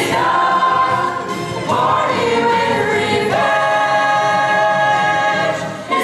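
Ensemble of voices singing a musical-theatre number over accompaniment, in long held notes. The last note swells into a chord held for about the final three seconds and cuts off just before the end.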